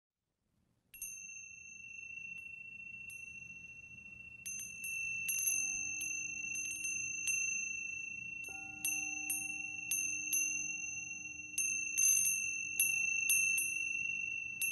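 Ambient meditation music: wind chimes tinkling over two steady high held tones, starting about a second in, with a low held tone joining about five seconds in. The chimes grow gradually louder.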